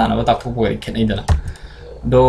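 A man speaking, then a sharp click a little over a second in followed by a few lighter clicks: keystrokes on a computer keyboard, as when a presentation is advanced to the next slide.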